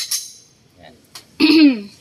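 A single handgun shot at the start, with a short ring after it. About a second and a half in comes a person's loud exclamation that falls in pitch, the loudest sound here.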